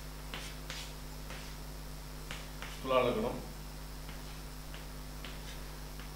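Chalk on a blackboard: a scatter of short clicks and taps as grid lines and small marks are drawn. About three seconds in comes one brief voiced sound from the man, a short word or hum that falls in pitch.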